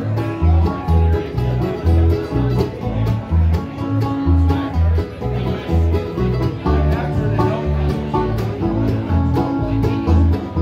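Bluegrass band playing an instrumental passage with no singing: banjo, acoustic guitar, mandolin and upright bass over a steady bass beat, recorded on a phone.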